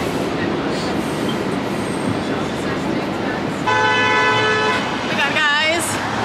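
Steady, dense background rumble, then a single horn blast held for about a second, a little past halfway through; a voice comes in near the end.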